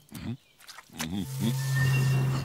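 Cartoon brown bear vocalizing: a few short low grunts, then a louder, steady low growl from about a second and a half in.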